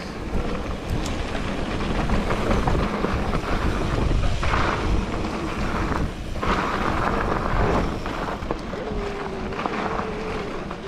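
Wind buffeting an action camera's microphone as a mountain bike descends a dirt singletrack, with a steady low rumble of tyres rolling over the trail. A faint steady hum comes in near the end.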